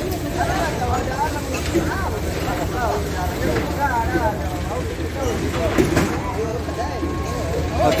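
Onlookers' voices chattering over a steady low rumble from a fire engine running nearby.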